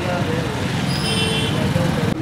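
Street traffic: a motorcycle engine running and a car passing close by, with people talking in the background.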